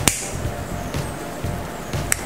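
A lighter clicks once right at the start, with a short hiss of gas after it, as it is lit to melt the cut end of the nylon cord. Soft background music plays underneath.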